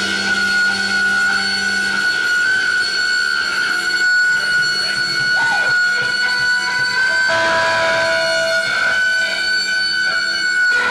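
Electric guitar feedback from a live band's amplifiers: a steady high-pitched ringing tone, with a fainter higher tone held above it. About five seconds in a short bending note comes in, and a lower steady note sounds from about seven seconds in for over a second.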